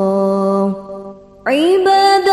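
Sholawat singing in Arabic: a long held note ends one sung line and fades out before the middle, and after about half a second of near quiet the voice slides up into the next line and holds.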